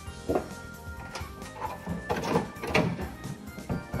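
Background music, with a few light knocks and scrapes of a fiberglass hood duct being set into a cut-out in a car hood.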